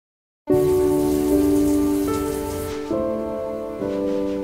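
Shower water spraying, starting suddenly about half a second in and cutting off a little past halfway, under soft sustained music chords that change every second or so.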